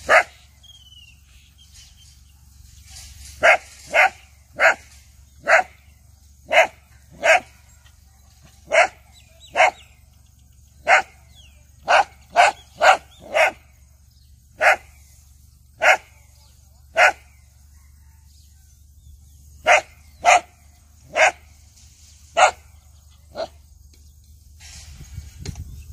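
A dog barking at a turtle in play, in about twenty short, sharp single barks at an irregular pace. The barks come in quick runs, with a few seconds' pause after the first bark and again about two-thirds of the way through.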